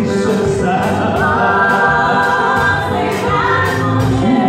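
Live gospel worship music: a lead singer and backing vocalists singing over a band with electric guitars, with a long held note in the middle.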